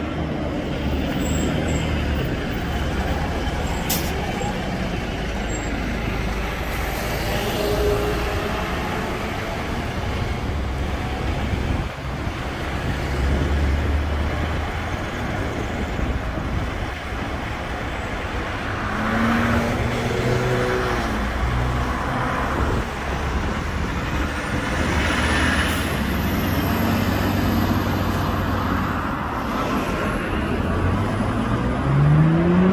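Diesel highway coach pulling away and driving off, its engine a steady low rumble mixed with road traffic as cars pass close by in swells. There is a single sharp click about four seconds in.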